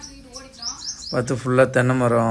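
Small birds chirping outdoors: a quick run of short, high chirps that fall in pitch, about half a second in.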